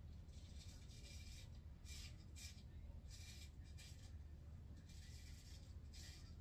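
ALE 8/8" full hollow straight razor scraping through lathered stubble on the neck in a series of short strokes, each a faint scratchy rasp.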